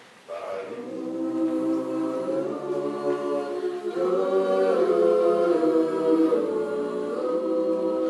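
Mixed-voice a cappella group singing held chords in close harmony, coming in together about a quarter-second in and growing louder.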